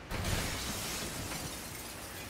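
A crash of breaking glass that starts suddenly and trails off over the next two seconds, a wrecking-ball smash sound effect.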